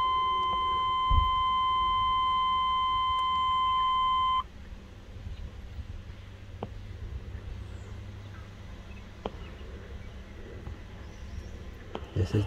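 A 1998 GMC K1500's dashboard warning tone beeps steadily on one high note after the ignition is switched on, then cuts off suddenly about four seconds in. Faint small clicks follow.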